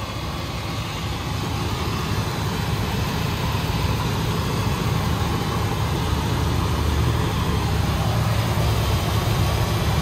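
1997 Ford Econoline 150 van engine idling steadily, heard up close in the open engine bay. It runs pretty smooth.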